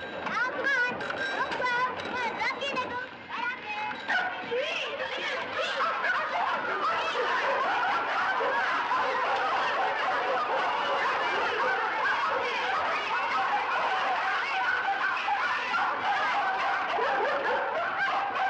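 A group of people laughing together, the laughter growing fuller after a few seconds and then holding steady.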